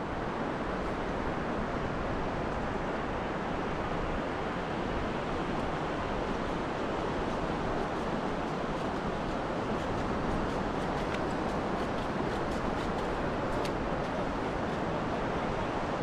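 Steady wash of sea surf and wind on an open beach, a continuous even noise with no distinct events.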